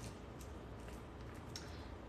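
Quiet kitchen room tone with a few faint ticks, about a third of a second in and again near a second and a half in, from a nearly empty barbecue sauce bottle being handled upside down.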